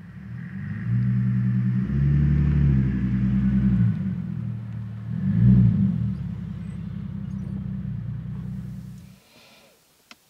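Car engine with a low note as the sedan drives up, its pitch stepping up and down several times and loudest about five and a half seconds in. It stops abruptly about a second before the end.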